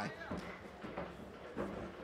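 Arena crowd noise from the cageside audience, with three short thuds about half a second apart as the MMA fighters trade strikes and step on the canvas.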